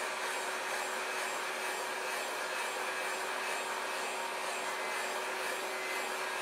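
Electric heat gun blowing hot air steadily over a filled chocolate mould to warm its surface, a constant rushing with a faint steady hum from the fan motor.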